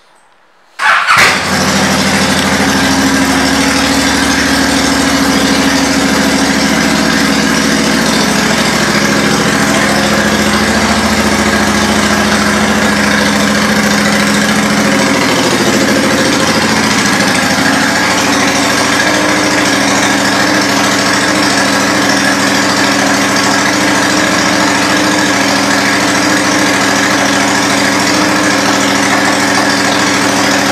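Honda Shadow Phantom's 745 cc V-twin, fitted with Cobra aftermarket exhaust pipes, started about a second in and catching at once, then idling steadily.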